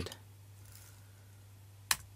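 A single sharp click at the computer near the end, over a steady low hum.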